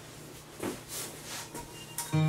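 A person shifting position on a yoga mat, from kneeling to sitting: a few faint soft rustles over a low steady hum in a quiet room.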